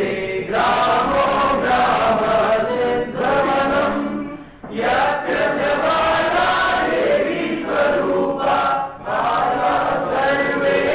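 A group of voices singing together in unison, in long phrases broken by short pauses about four and a half seconds in and again near nine seconds.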